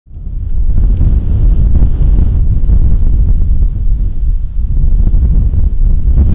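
Wind buffeting an outdoor microphone: a loud, gusty low rumble that fades in at the start and dips briefly near the end.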